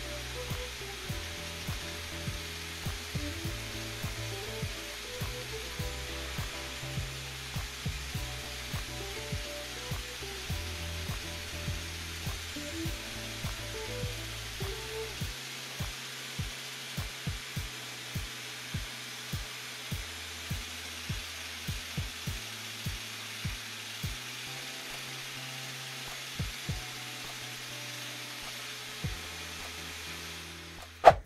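Shop vacuum running steadily under background music with a bass line and a steady beat.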